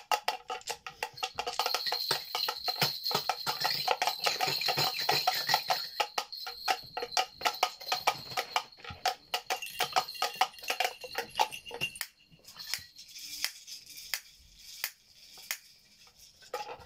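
Toy hand percussion instruments shaken and struck, a dense, fast rattling with a bright jingling ring for about twelve seconds, then thinning to scattered taps and shakes near the end.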